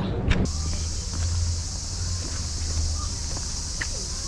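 A brief knock, then about half a second in the sound cuts to a steady, high-pitched chorus of insects chirring in the trees, over a low rumble.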